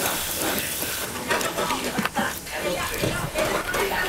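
Indistinct voices over steady kitchen noise, with a continuous hiss of food frying in pans on the stoves.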